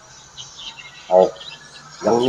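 A man's brief vocal sound about a second in, over faint high chirping in the background.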